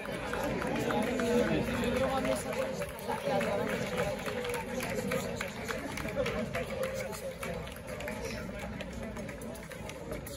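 Crowd chatter: many spectators talking at once, with scattered light clicks and taps throughout.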